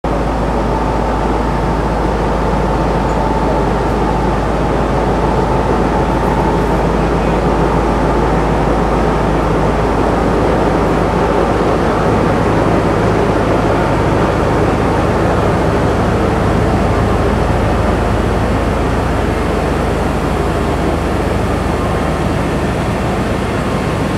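A passenger train's power van (furgón usina) runs its generator to supply power to the whole train, a loud, steady machine drone with a constant low hum and no change in pitch.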